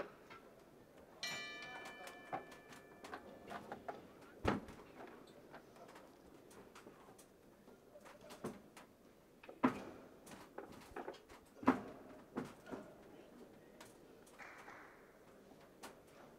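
A boxing ring bell struck once about a second in to start the round, ringing and fading over a couple of seconds. Then scattered sharp knocks of gloved punches and footwork on the ring canvas as the boxers exchange, the loudest about four, ten and twelve seconds in.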